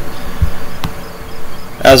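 A steady buzzing hiss with two brief clicks, then a man's voice starts near the end.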